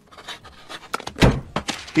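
A single heavy thunk on a desk about a second and a quarter in, followed by a few lighter knocks.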